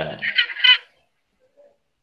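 A man's voice trailing off over video-call audio, followed by two short high-pitched calls within the first second, then near silence.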